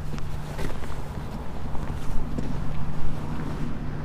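Footsteps on gravel, irregular short crunches, over a steady low hum.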